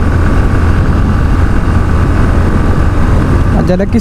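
Bajaj Pulsar NS160 motorcycle riding at a steady cruise, its engine drone mixed with heavy wind rushing over the microphone. A man starts speaking near the end.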